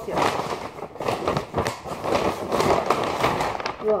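Large paper shopping bag rustling and crackling loudly as two plush cushions are tugged out of it with effort.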